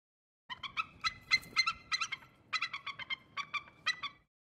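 Logo-intro sound effect: a rapid run of short, pitched, chattering pulses, about six a second, in two runs with a brief break near the middle.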